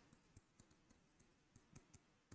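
Near silence with a few faint, scattered clicks from a marker writing on a whiteboard.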